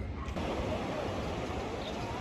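Steady beach ambience: an even wash of gentle surf and breeze, with faint distant voices.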